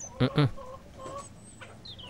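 Birds calling in the background: two short low clucks, like a hen's, near the start, and a quick run of high chirps near the end.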